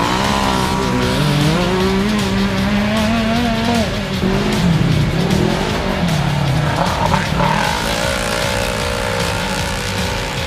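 Side-by-side UTV race engines revving hard as the cars climb a rutted dirt hill. The pitch rises over the first few seconds, dips and picks up again twice in the middle, then holds fairly steady near the end.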